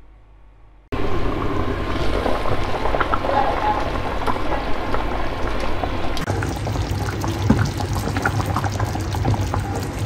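Thick pepper-and-broth sauce with meatballs bubbling at a hard boil in a pan: a dense, steady crackle of bursting bubbles that starts abruptly about a second in.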